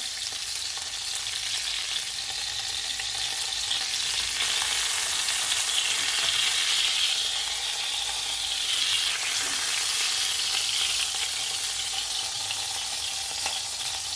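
Chicken thighs frying in hot oil in a nonstick pan: a steady sizzle, with a few faint clicks as the pieces are lifted out.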